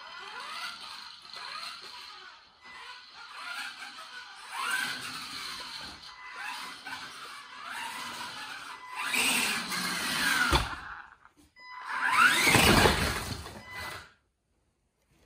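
Electric RC car being driven hard on a smooth concrete floor: its motor whine sweeps up and down with the throttle, with tyre squeal in the turns. It gets louder toward the end, with a thump about ten and a half seconds in.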